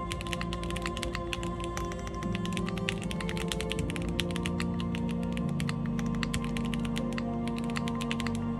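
Fast, continuous typing on an IRON165 R2 gasket-mounted custom mechanical keyboard with WS Red switches in a polycarbonate plate and GMK keycaps: a dense run of keystroke clacks. Soft background music plays under it.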